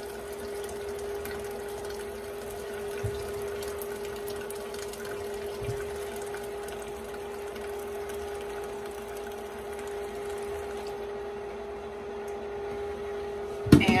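Corn cob broth running in a thin, steady stream from an electric canner's spout through a mesh sieve into a measuring cup, over a steady appliance hum.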